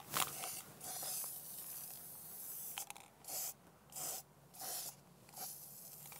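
Aerosol can of Rust-Oleum dead flat top coat spraying onto a plastic duck decoy: a hiss of about two seconds, then four short puffs.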